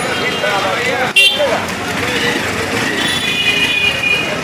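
Busy street-market ambience: people talking in the background over traffic noise, with a steady high horn tone starting about three seconds in.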